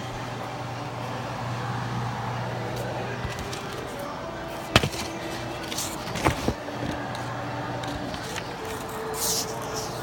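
A steady low hum, with a sharp click about five seconds in and a few lighter clicks and knocks after it.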